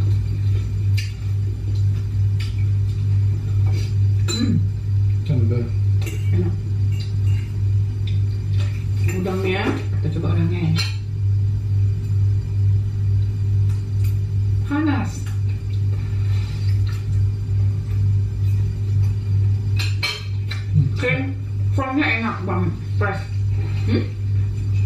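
Forks clinking and scraping against plates and plastic takeaway containers during a meal, a scattering of light clicks through the whole stretch, over a steady low hum.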